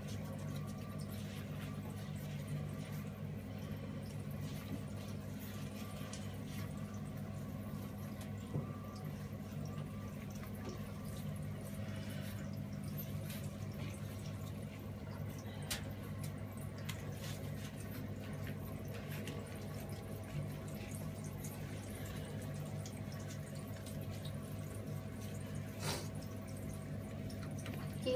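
Shower water running in a bathtub: a steady low hum, with a few drips and small splashes now and then.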